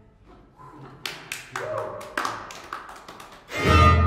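String quintet playing contemporary music: after a near-quiet moment, a string of sharp, irregularly spaced taps and short struck notes, then a loud low sustained chord swelling in near the end.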